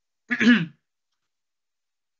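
A man's single short throat-clearing cough, about half a second long.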